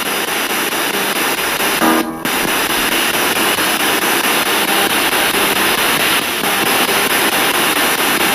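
A two-channel spirit box sweeping radio stations: continuous choppy radio static with snatches of broadcast sound. It briefly cuts out about two seconds in.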